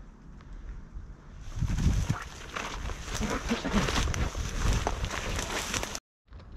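Dry brambles and undergrowth rustling and crackling, as if being pushed through, with wind rumbling on the microphone. It starts about a second and a half in and stops abruptly at a cut.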